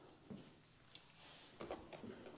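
Faint thumps and one sharp click as a rider climbs onto a parked motorcycle, with the engine off.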